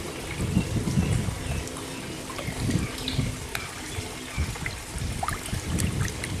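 Koi thrashing and churning at the pond surface as they crowd around a hand in the water: irregular sloshing with small splashes and drips.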